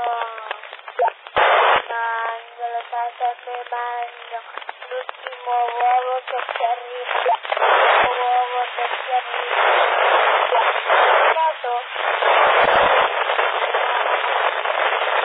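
Voices received over a PMR446 FM walkie-talkie channel, narrow and muffled in sound and broken up by bursts of static hiss. The hiss takes over for most of the last few seconds.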